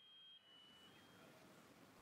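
Near silence, with a faint high steady tone that stops about halfway through.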